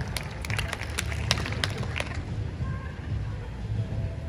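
A quick, irregular run of sharp clicks over a steady low outdoor rumble.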